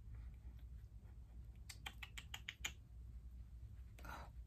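A quick run of about seven light, sharp clicks over roughly a second, a little under two seconds in, over a low, steady room hum.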